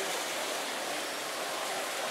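Steady, even rush of splashing water from a street fountain, with faint crowd chatter under it.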